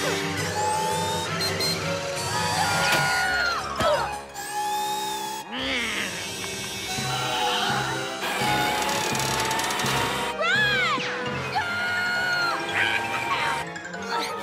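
Cartoon action score with sound effects layered over it, including several sliding tones that rise and fall in pitch.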